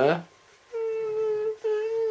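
A person's voice holding one steady high note, a whine, starting about a second in with a brief break partway through.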